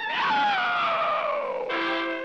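Early-1930s cartoon soundtrack: a sharp hit, then a long sound falling steadily in pitch over about a second and a half, the effect that goes with the cat being flung by the mice's slingshot. The band comes back in with a new chord near the end.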